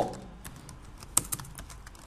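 Computer keyboard typing: a handful of irregular key clicks, one louder about a second in.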